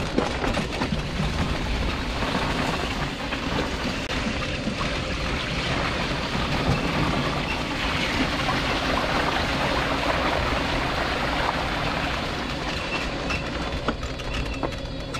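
Mobility scooter rolling along a wet, slushy footpath: a steady hiss and rumble of tyres through slush, louder through the middle.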